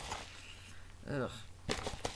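A woman's short voiced "ugh", otherwise quiet room tone, with a single sharp click near the end.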